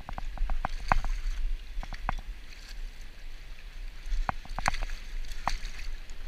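Water sloshing and splashing in rocky shallows as a hooked walleye is drawn to the shore and grabbed by hand, with a string of short sharp clicks and knocks, the busiest in the first two seconds and again near the end.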